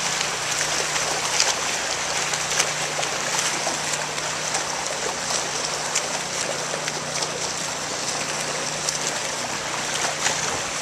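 Several swimmers doing freestyle laps in a pool: a steady wash of churning water with many small splashes from arm strokes and kicks, over a steady low hum.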